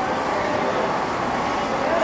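Steady city street background noise, a constant rush of distant traffic and footfall with faint voices in it.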